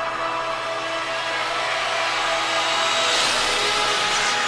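Movie trailer soundtrack: a held orchestral chord, with a rushing swell building over the last second or two.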